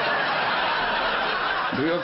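Audience laughing steadily together, dying away near the end as the comedian starts talking again.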